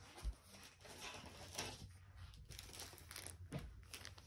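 Faint rustling and crinkling of packaging as items are handled and lifted out of a shipping box, with a soft low bump just after the start.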